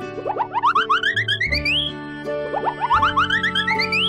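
Cartoon sound effect: a quick run of short notes climbing in pitch, played twice, over a steady children's music backing.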